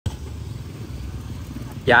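Motorbike and scooter traffic passing on a street, a steady low rumble of small engines.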